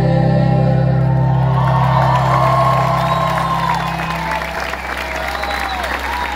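A rock band's final chord held and ringing out live, with the audience cheering and applauding over it. The low sustained notes fall away about four seconds in, leaving the crowd's cheers.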